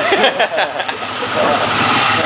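A small motorcycle engine running close by, with a man's voice over it in the first second.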